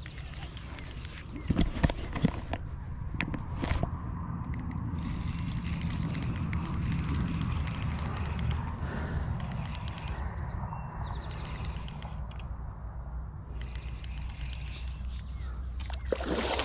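Steady low wind rumble on the microphone, with a few sharp handling knocks and clicks about two seconds in, as a spinning rod and reel are worked against a hooked fish.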